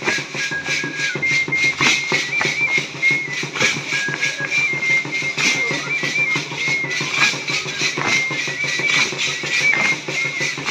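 Live music accompanying a danza: a drum keeping a steady, quick beat under a high, thin melody that steps between a few held notes.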